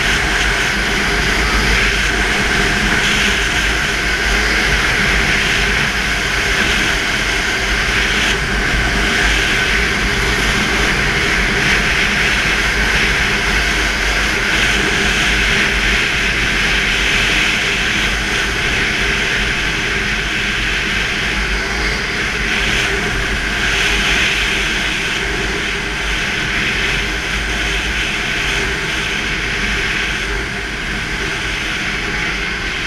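Snowmobile engine running steadily at cruising speed, heard from the rider's position, with a continuous rush of wind over the microphone.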